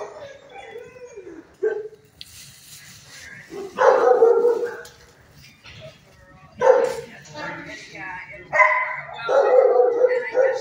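A dog barking in repeated bouts, about five in all, spaced a second or two apart, with one longer bout about four seconds in.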